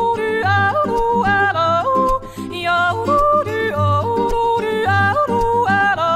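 A woman yodeling without words, her voice flipping again and again between a low chest note and a high head note, with acoustic guitar accompaniment and low bass pulses.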